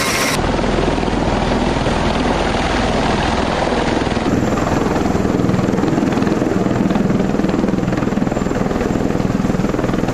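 An MV-22B Osprey tiltrotor's twin turboshaft engines and proprotors running loudly with a steady, rhythmic rotor beat. The sound changes abruptly about four seconds in, where the aircraft is hovering in helicopter mode just off the ground.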